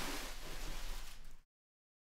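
Faint, steady hiss that cuts off abruptly about one and a half seconds in, leaving dead silence.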